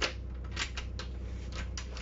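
Several light clicks from wooden cabinet and pantry doors and their latches being handled, over a steady low hum.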